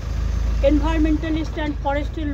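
A woman speaking Bengali, her speech starting about half a second in, over a steady low rumble.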